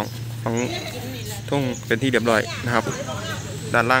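People talking in short phrases with pauses, over a steady low hum.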